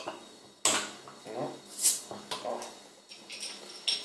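A metal bottle opener prying the crown cap off a glass beer bottle: sharp metallic clicks, then a short hiss of escaping gas as the cap comes off, the loudest about two seconds in.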